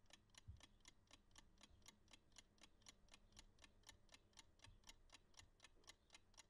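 Mechanical analog chess clock ticking faintly and evenly, about four ticks a second.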